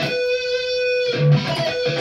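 Electric guitar holding a single sustained note, the 16th fret on the G string, at the end of a three-note sweep that falls from the 19th fret on the high E string through the 17th on the B. The note starts right away and rings steadily for about two seconds.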